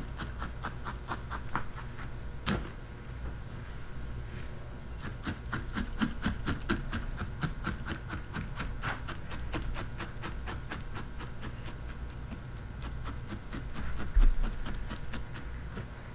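A felting needle in a pen-style holder stabbing repeatedly into wool roving, a steady run of light ticks several times a second as a wool pelt is felted onto a core. One louder click comes about two and a half seconds in.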